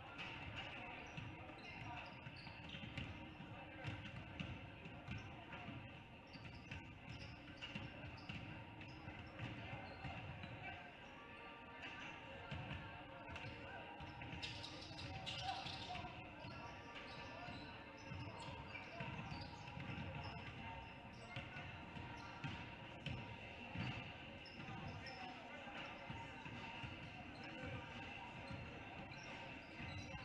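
Many basketballs bouncing irregularly on a hardwood gym floor as several players dribble and shoot at once, over a murmur of voices in the gym.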